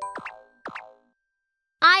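Cartoon hop sound effects: a quick run of rising musical notes, then two fast downward-swooping boings about half a second apart.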